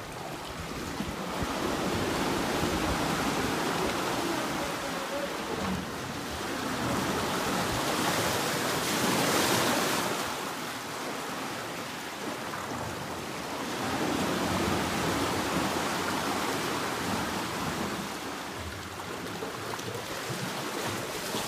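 Water surging back and forth in a narrow rock-walled pool, sloshing and splashing against the rock walls: a seiche set off by the seismic waves of a distant earthquake. The rush swells and ebbs in slow surges about every six seconds, loudest about halfway through.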